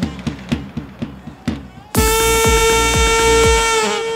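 Live band music for dabke dancing: a drum beat alone for about two seconds, then a loud, steady high held note comes in over the beat and lasts almost two seconds.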